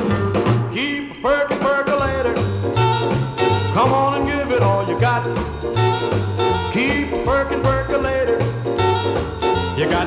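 Instrumental break in a late-1950s swing-style pop record: a saxophone lead plays phrases that scoop up into their notes over a walking bass line stepping about twice a second, with no singing.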